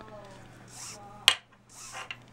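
Paracord being handled, with two soft rustles and one sharp click a little past halfway, over a low steady hum.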